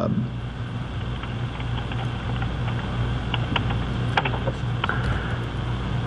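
Steady low hum of room background noise, with a few faint clicks and taps.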